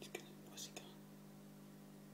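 A faint, steady low hum throughout. In the first second come a few soft clicks and a brief hissed whisper.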